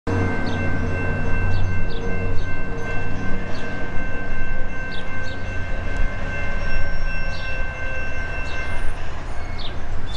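Horn of an approaching Norfolk Southern GE ET44AC locomotive, a chord held steadily and cut off about nine seconds in, over a low rumble. Birds chirp now and then throughout.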